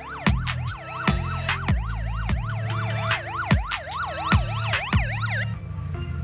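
Police siren yelping, about four rising-and-falling sweeps a second, over music with deep bass drum beats. The siren cuts off shortly before the end while the music carries on.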